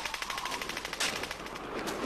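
Rapid machine-gun fire, a fast even rattle of shots, followed by a few separate single shots near the end.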